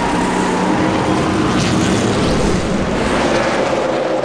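NASCAR Sprint Cup stock cars' V8 engines running at racing speed on the track: a steady, loud engine drone with engine notes drifting slightly in pitch.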